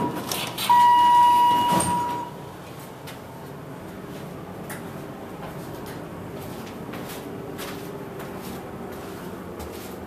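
Dover hydraulic elevator: a single steady electronic beep lasting about a second and a half near the start, with a knock as it ends, then the car running with a steady low hum.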